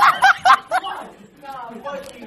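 A person laughing in quick pulses, about four a second, for the first second, then trailing off into quieter voice sounds.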